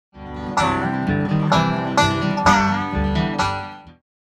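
Bluegrass string-band music led by a picked banjo with guitar, fading in at the start and fading out near the end.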